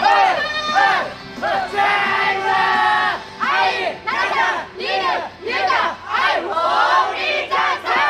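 A crowd of idol fans shouting a rhythmic call chant in unison, short loud shouts one after another in a steady beat. This is the member call that fans shout during the song's instrumental break.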